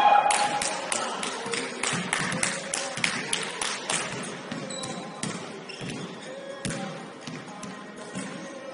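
A basketball bounced repeatedly on a hardwood gym floor: quick bounces for the first few seconds, then only a few scattered ones.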